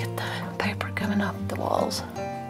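Soft acoustic guitar background music, with breathy whispering over it in short bursts, the strongest near the end.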